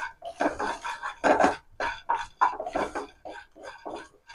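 Peanuts rattling and scraping in a non-stick kadai as a wooden spatula stirs them while they dry-roast, in short irregular strokes a few times a second.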